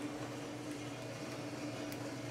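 Gas-fired drum coffee roaster running with a steady hum from its drum motor and exhaust fan, the airflow opened almost all the way late in the roast's development. A faint click near the end.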